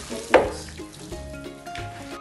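Bare hands squishing and kneading raw minced beef mixed with grated cheese, onion and chili flakes in a plastic bowl, with one sharp, loud squelch about a third of a second in.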